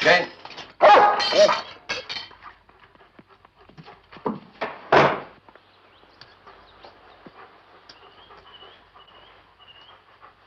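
A German Shepherd dog barking several times in the first half, in short loud bursts. A faint high wavering tone follows near the end.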